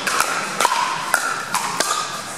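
Pickleball paddles striking a plastic ball in a quick net exchange: about five sharp pocks, each with a brief ring, roughly half a second apart.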